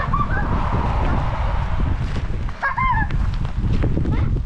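Two short honking calls, a brief one just after the start and a longer one rising and falling near three seconds in, over a steady low rumble.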